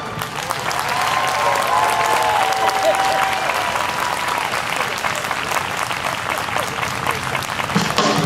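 Audience applauding, with a few voices cheering in the first few seconds. The band's music starts up again near the end.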